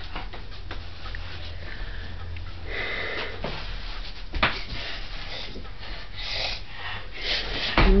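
A child sniffing and breathing between turns, in a few short breathy puffs, with a single sharp knock about four and a half seconds in, over a steady low hum.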